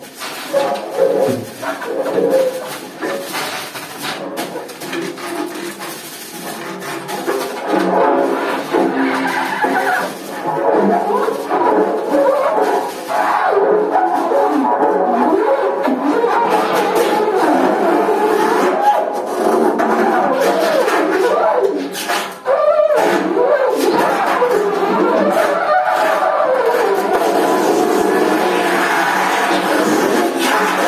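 Free-improvised tenor saxophone and snare drum duo: the saxophone plays dense, wavering lines over stick strikes on the snare. The playing builds to a loud, sustained passage from about twelve seconds in, with a brief break a little after twenty-two seconds.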